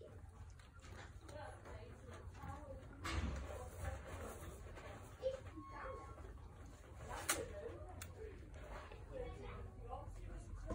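Kittens mewing faintly and repeatedly while they feed, with sharp clicks about three seconds and seven seconds in.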